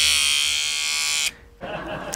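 Electric hair clippers buzzing steadily close to the microphone, mimicking a haircut, then cutting off suddenly about a second and a half in.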